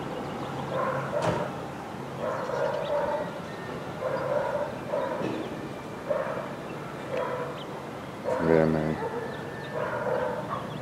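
A dog barking repeatedly, short barks about once a second, with one louder, drawn-out bark near the end.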